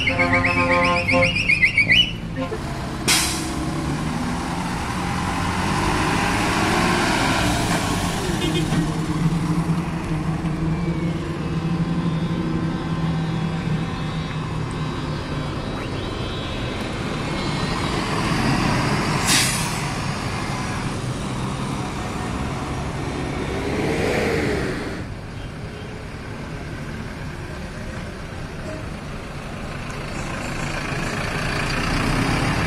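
City buses driving past one after another, their diesel engines running steadily, with two sharp bursts, one about three seconds in and one just past the middle, and a brief rise and fall in engine pitch near the end.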